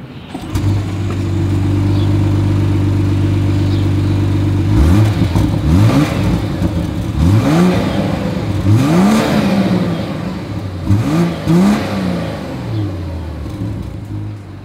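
2025 BMW X7's engine and dual exhaust: the engine starts about half a second in and idles steadily, then from about five seconds in is revved in a series of quick blips, each rising and falling in pitch, before settling back to idle near the end.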